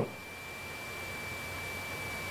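A faint, steady high-pitched tone held at one pitch over low background hiss.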